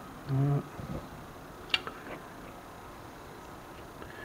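Quiet workshop room tone with a short hummed 'mm' from a man just after the start, and two light clicks a little before and after halfway. No machine is running.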